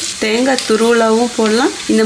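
Coconut pieces sizzling in hot ghee in a kadai while a metal ladle stirs them. A repeated pitched vocal phrase, loudest of all, runs over the sizzle, breaking every half second or so.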